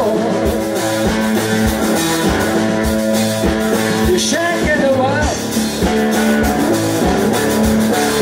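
A live rock band playing: electric guitar and bass guitar over a drum kit keeping a steady beat, with sliding, bent notes about halfway through.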